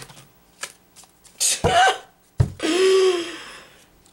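A tarot deck handled and shuffled by hand: a few soft card clicks, then two sharp taps about a second apart. Each tap is followed by a woman's wordless vocal sound, and the second sound is a long, drawn-out sigh.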